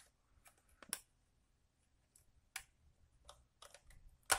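Faint, scattered clicks of a small precision screwdriver against the plastic body of a Canon 1200D DSLR as the case is worked at; about five light ticks, the sharpest about a second in.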